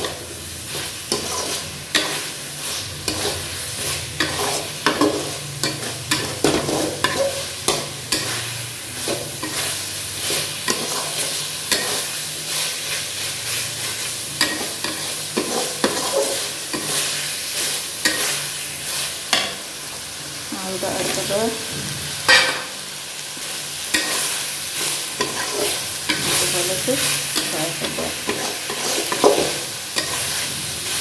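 A spatula stirring and scraping chicken frying in a thick masala in a kadai, over a steady sizzle with frequent clacks of the spatula against the pan. One sharper knock comes about two-thirds of the way through.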